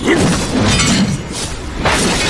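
Fight-scene sound effects: a sudden crash right at the start, then a few more sharp hits about two-thirds of a second apart, over steady rain.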